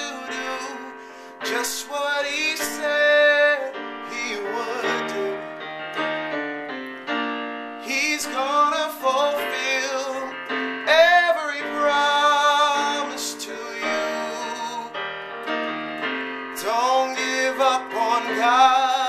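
Casio digital piano playing sustained gospel chords in B-flat, the song's repeating 1-5-6-4 progression, with a voice singing along in places, sliding between notes.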